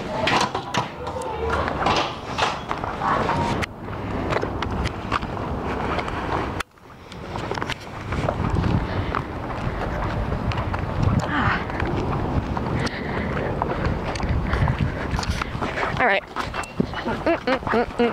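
Indistinct voices over hurried footsteps and camera handling noise, with irregular knocks and rustles throughout and a brief drop in sound about seven seconds in.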